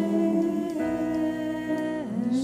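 Church worship band playing a slow song: voices holding a long note over keyboard and guitars. The chord changes and a low bass note comes in just under a second in.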